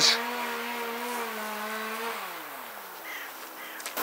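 Engine of hedge-cutting machinery running steadily at a constant pitch, then slowing with a falling pitch about two seconds in.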